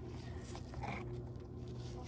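Faint rubbing of a rubber shift-linkage bushing being worked onto its metal rod by gloved hands, with silicone paste, over a low steady hum.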